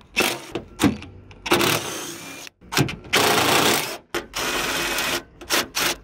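DeWalt 20V cordless impact driver hammering out fender bolts in a string of bursts, the longest about a second each, with short pauses between.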